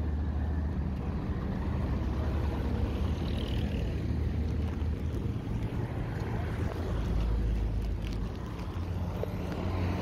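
Road traffic: engines of passing vans and trucks running, a steady low rumble.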